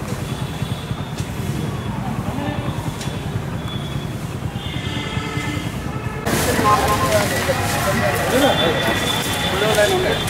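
A steady low rumbling background noise, then about six seconds in it turns louder and people's voices come in.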